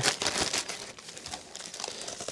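Clear plastic Ziploc bag crinkling as it is pulled open by hand, loudest in the first half second and then fading to light rustling.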